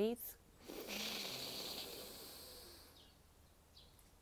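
A woman taking a deep breath in through her nose. The long, breathy inhalation starts just under a second in and fades away over about two seconds.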